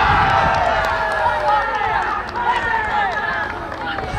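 Many voices shouting and yelling together outdoors as a goal is celebrated in a youth football match, loudest at the start and thinning out towards the end.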